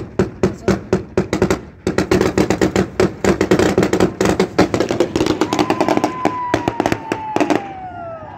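Rapid, irregular gunfire, several shots a second, over the noise of a crowd, with a long falling tone near the end.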